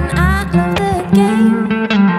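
Telecaster-style electric guitar played through an amplifier, picking notes and chords in a song.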